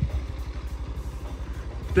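Motorcycle engine idling with a steady, low pulsing rumble.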